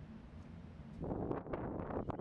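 Wind blowing on the microphone, picking up about a second in, with a few faint knocks.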